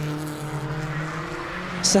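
BMW E36 Compact race car engines running on track, a steady engine note that dips slightly in pitch about one and a half seconds in.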